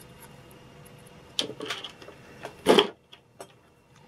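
Small plastic gears and a plastic gearbox housing being handled and fitted by hand: a few light clicks, then one louder knock a little before three seconds in.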